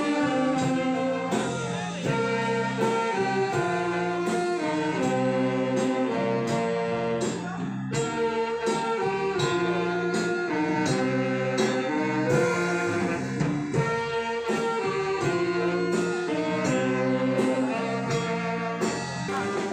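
Brass band music: held melody notes over a steady beat of about two strokes a second.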